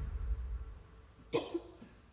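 A low rumble from the film's score fades away, then a little past halfway comes a single sharp, cough-like vocal outburst from a distraught woman, with a smaller catch of breath just after.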